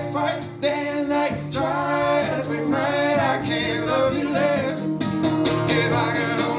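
Live acoustic band: two acoustic guitars strummed with a cajon, and a man singing a held, wordless melodic line over them. Sharper drum strikes come in near the end.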